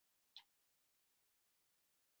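Near silence, broken once by a faint, very short sound about half a second in.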